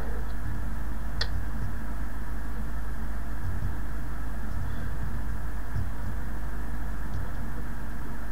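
Steady low hum and hiss of the recording's background noise, with one short click about a second in.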